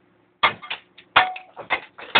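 A quick, irregular run of sharp knocks and scrapes, several a second, starting a little way in; the loudest is just past the middle. It is tool or hand work on the scaled surfaces inside a boiler being overhauled. A faint steady hum lies underneath.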